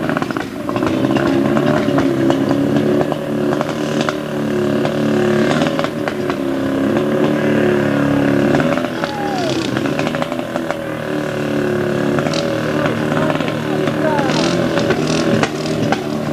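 Firefighting pump engine running steadily at high revs, pumping water through the hose lines to fill the targets in a fire brigade combat drill.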